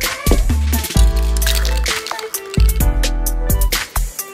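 Background music with a heavy beat: deep bass notes about a second apart under sharp drum hits and sustained synth tones.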